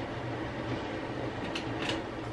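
A steady mechanical hum with a low rushing noise from a sensor-triggered appliance that keeps switching itself on, heard as an annoying background drone.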